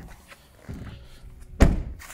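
The hatchback tailgate of a 2017 Kia Picanto being pulled down, with a low rumble as it swings, then shut with one solid thunk about one and a half seconds in.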